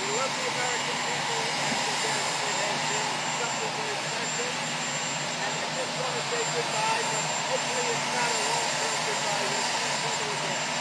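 Helicopter turbines running, a loud, even rush with a steady high whine above it, and faint voices coming through underneath.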